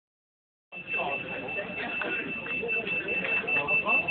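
A steady, high-pitched electronic tone sounds continuously, starting under a second in, over people talking in the background.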